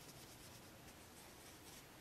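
Faint rubbing and scratching of fingertips across pressed powder eyeshadow pans, barely above room tone.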